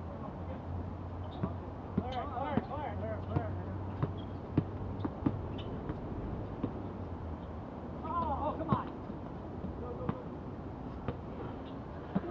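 Basketball bouncing on an outdoor hard court: a run of sharp bounces about two a second between two and five seconds in, with players calling out in two short stretches.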